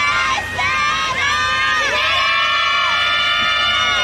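A group of girls' voices shouting a team cheer. Short calls come first, then one long held call that the voices drop together near the end.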